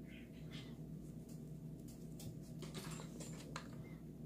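Faint handling sounds of a ribbon being folded around a wooden stick: a few soft rustles and light ticks over a steady low hum.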